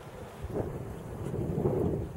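Wind buffeting the microphone: a low rumble that swells about half a second in and again, loudest, near the end.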